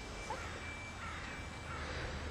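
German Shepherd puppy whining: three short, high whines about two-thirds of a second apart.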